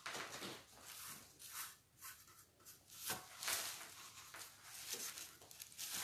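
Quiet, irregular brushing strokes of a paintbrush lightly going over wet paint on a license plate.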